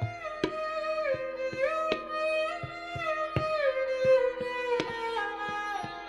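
Hindustani classical music: a sarangi plays a slow melodic line that glides between notes over a steady drone, with tabla strokes falling about once or twice a second.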